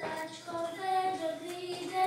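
Children singing a song, with its notes held and changing in pitch as a melody.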